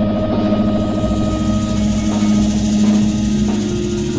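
Experimental electronic music: several held drone tones over a low, buzzing rumble, with one of the middle tones stepping up in pitch a little past halfway.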